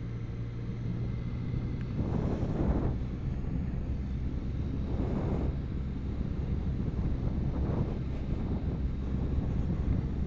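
Can-Am Spyder three-wheeled motorcycle engine running at low road speed with a steady low hum. Wind rushes over the helmet microphone in swells about two, five and eight seconds in.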